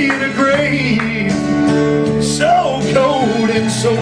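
Gospel song accompaniment with acoustic guitar and sustained backing chords, a melody line sliding between notes, in a passage between sung lines.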